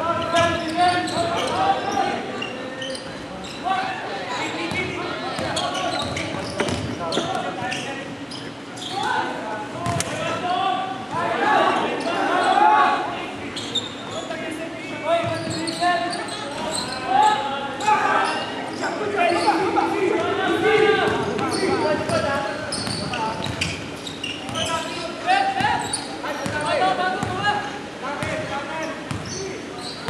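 Basketball bouncing on a hardwood gym floor during play, with players' indistinct calls in an echoing hall.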